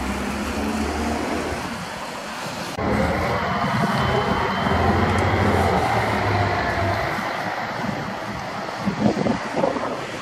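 Street traffic: a car driving past on the road, with engine rumble and tyre noise that grows louder for a few seconds and then fades. A few sharp thumps come near the end.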